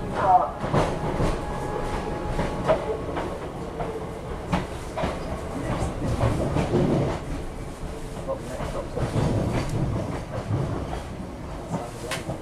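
Running rumble of a passenger train heard from inside the carriage, with irregular sharp clicks as the wheels pass over the track.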